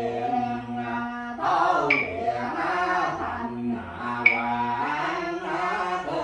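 A man chanting a funeral prayer from a written text in long, held notes. A small bell is struck twice, about two and a half seconds apart, each strike ringing briefly.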